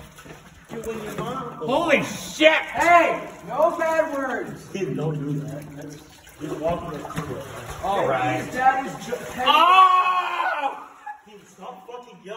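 Kids' voices yelling long, drawn-out 'ah' cries over and over, rising and falling in pitch, inside a concrete drainage culvert.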